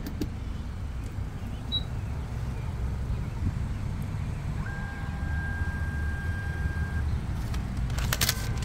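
Steady low rumble of traffic and engines around a gas station pump. A little under five seconds in, a thin steady whine lasts about two seconds as the pump's receipt printer runs.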